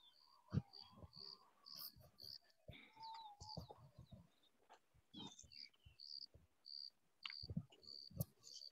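Near silence, with faint short high chirps at one pitch every half second or so and a few soft clicks.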